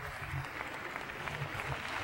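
Arena audience applauding, a dense patter of many hands clapping that grows slightly louder near the end.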